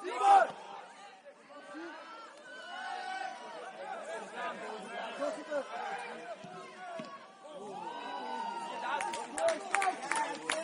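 Footballers shouting to one another on the pitch, several overlapping calls, a loud shout at the start. A few sharp knocks near the end.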